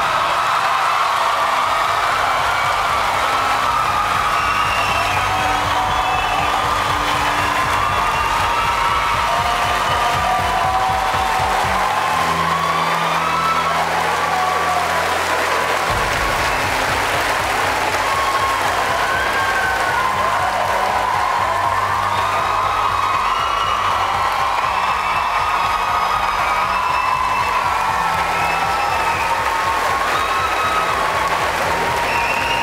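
A studio audience applauding and cheering over music with sustained low notes, steady and loud throughout.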